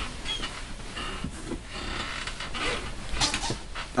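Handling and movement noise as a person reaches off to one side and picks up a mobile phone: an uneven, noisy rustle with a few faint scrapes near the end.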